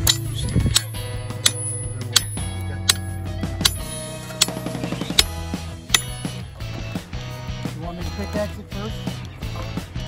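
Steel hammer striking a chisel driven into rock: a steady series of sharp metallic clinks about every 0.7 s, each with a short ring. Background music plays underneath.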